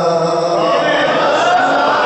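A man's voice chanting in long, held lines that rise and fall in pitch, amplified through a microphone: a zakir's chanted elegiac recitation.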